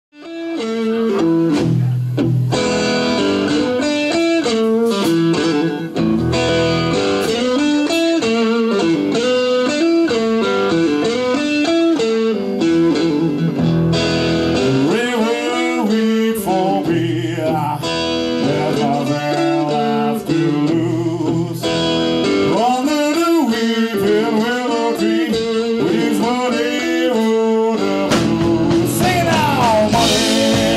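A live blues band plays a slow blues: an electric guitar leads with bent notes over bass and drums. The music fades in from silence at the very start.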